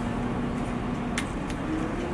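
Crane engine running steadily with a low held whine as it lowers a suspended load on its cables; the whine dips slightly in pitch near the start and rises again near the end. A single short click about a second in.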